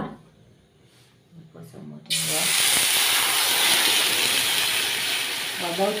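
Water hitting a hot pan: a loud hiss and sizzle that starts suddenly about two seconds in and holds steady.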